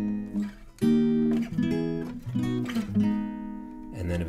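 Acoustic guitar playing a chord progression: a loud chord rings out about a second in, followed by several softer chord changes.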